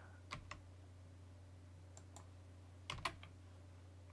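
A few faint keystrokes on a computer keyboard: a pair of quick clicks about a third of a second in, a lone faint one near two seconds, and another pair near three seconds, over a steady low hum.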